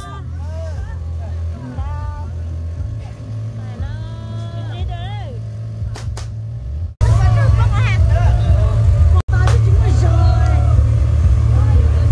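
People's voices talking and calling over a steady low rumble, which gets louder about seven seconds in. The sound cuts out for an instant twice.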